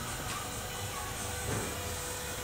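Steady low hiss of workshop background noise, with a faint thin tone coming in during the second half.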